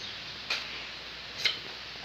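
Two short, sharp clicks of cutlery against a plate, about a second apart, as a knife cuts a wheel of cheese on a plate at the table.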